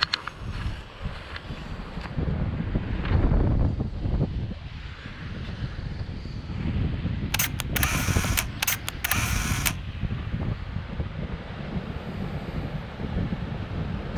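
Wind and handling rumble on a handheld action camera's microphone, with a quick run of camera-shutter clicks between about seven and ten seconds in.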